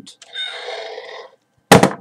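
A hiss lasting about a second, then a single sharp, loud bang like a gunshot near the end.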